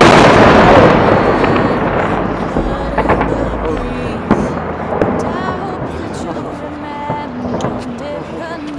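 A large explosion goes off right at the start, loud and dying away over about two seconds, followed by crackling and several sharper bangs near three, four and five seconds in.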